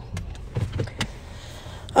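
Low, steady engine and road rumble inside a Nissan car's cabin while driving, with a few sharp clicks, the loudest about a second in.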